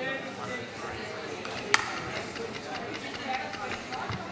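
Indistinct murmur of voices in a large room, with one sharp click a little under two seconds in.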